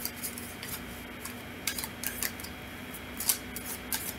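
A deck of tarot cards being shuffled by hand: irregular soft, crisp snaps and slides of cards against one another, a little louder in clusters about a second and a half and three and a quarter seconds in.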